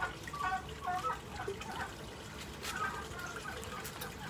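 Water trickling steadily through an aquaponics grow bed, with a few brief high notes and a couple of light clicks from hand pruning secateurs over it.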